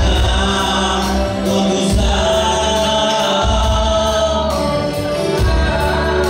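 A congregation singing a worship song together over live band accompaniment, with deep bass notes that change every second or two.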